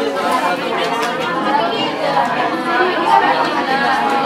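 Many voices talking over one another at once: a classroom full of students chattering steadily while they work.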